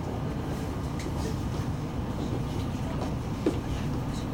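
Steady low hum and rumble inside a Tama Monorail car standing at a station platform, with a faint short knock about three and a half seconds in.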